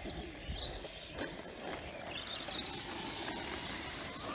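Electric whine of an RC truck's HPI 4000kv brushless motor, wavering with the throttle and then rising steadily in pitch as the truck accelerates across grass, over a low rumble of the truck running on rough ground.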